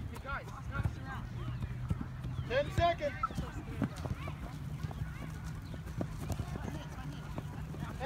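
Voices of youth soccer players calling out across an open field, the loudest call about three seconds in, over a steady low rumble and a few sharp knocks.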